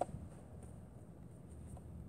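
A single brief tap as a hand touches the plastic scooter and its light-up wheel, then only a faint low background hum.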